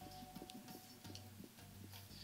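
Near silence: room tone with a few faint, irregular small clicks.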